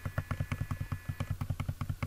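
A rapid, even run of computer keyboard key clicks, about ten a second, as text is deleted from a search box.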